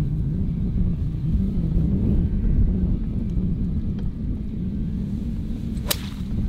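A golf club striking a ball off the grass: one sharp crack near the end, over a steady low rumble.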